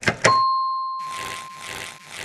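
Two quick clicks of a button being tapped, then a single electronic ding that rings and fades over about a second, signalling the gate's light turning green. From about a second in, a rhythmic swishing scrape repeats about twice a second as the cartoon character moves.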